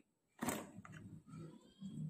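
Plastic cap of a Harpic toilet-cleaner bottle clicking open once, about half a second in, followed by faint handling of the plastic bottle.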